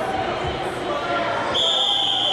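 Voices and hall noise in an arena, then about one and a half seconds in a long, steady, high whistle blast starts suddenly and holds: the referee's whistle stopping the wrestling bout.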